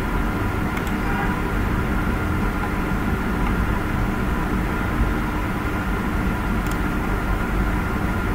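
Steady background hum and hiss with a few faint steady tones in it, and two faint clicks, one about a second in and one near the seven-second mark.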